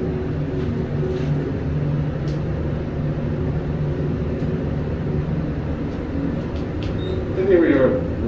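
Delaware hydraulic scenic elevator riding down, a steady hum in the cab with a few light clicks. Near the end, as the car nears the bottom floor, a short voice is heard.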